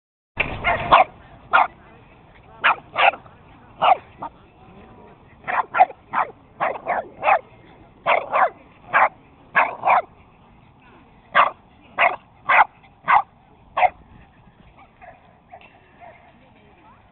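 A dog barking repeatedly in short, sharp barks, often in quick pairs, while wrestling and chasing in play; the barking stops about two seconds before the end.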